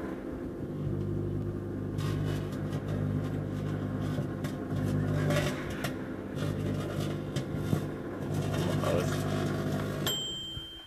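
Microwave oven running with a steady hum. From about two seconds in come irregular crackles and snaps as the carbon fibre inside arcs and sparks.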